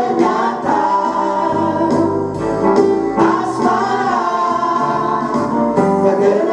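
A mixed vocal group of three men and a woman singing together through microphones, over an accompaniment with a steady beat.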